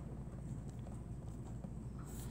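A marker writing on paper: a run of light taps and scratches as each stroke is put down, over a low steady hum.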